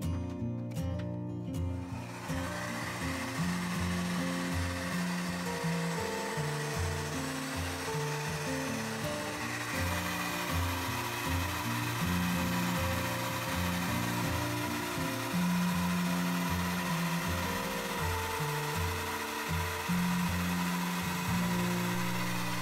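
Handheld hair dryer blowing steadily, starting about two seconds in, used to dry Mod Podge glue.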